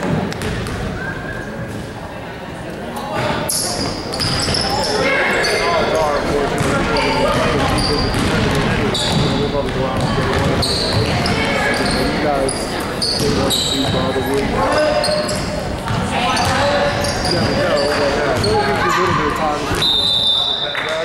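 Live basketball play in an echoing gym: the ball bouncing on the hardwood floor and sneakers squeaking, over the chatter of players and spectators. The squeaks and bounces come thick and fast from about three or four seconds in, once play is under way.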